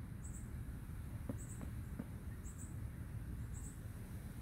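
An insect, cricket-like, chirps steadily: a short, high double chirp about once a second, over a low outdoor rumble. Three faint clicks come in the middle.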